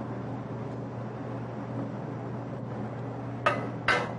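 Steady low hum of kitchen room tone, with two short clinks near the end, about half a second apart, from a metal spoon against a metal ring mold as couscous is packed in.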